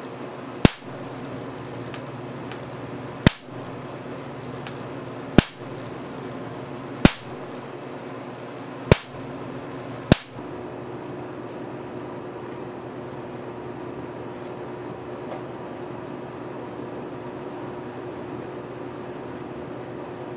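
Damp Marx generator's sparks cracking across a 7-inch electrode gap: six sharp cracks spaced roughly two seconds apart, a slow firing rate because the generator is damp. About ten seconds in the sparks stop and a high hiss drops away, leaving a steady low hum.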